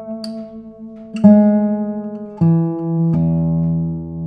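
Radially braced, spruce-topped classical guitar (a 2023 Robin Moyes) played in single bass notes. Three notes are plucked about a second apart, each lower than the last, and each rings on with a long sustain. The last is the low E string, left ringing.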